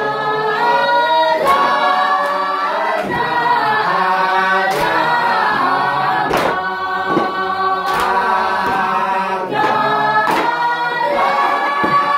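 A group of people singing together unaccompanied, with a sharp percussive beat every second or two.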